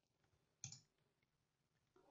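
Near silence with a single computer mouse click a little over half a second in.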